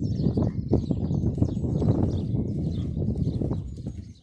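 A horse's hooves thudding dully on a soft sand arena surface as it approaches at close range, the sound falling away near the end as it passes. Birds chirp faintly in the background.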